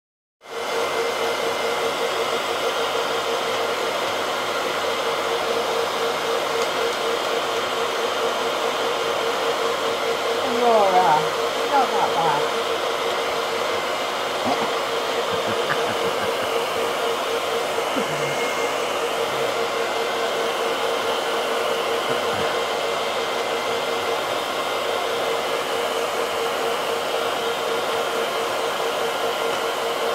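A hand-held hair dryer running steadily: a continuous rush of air over a steady motor whine, starting about half a second in. A few short falling calls stand out briefly about eleven to twelve seconds in.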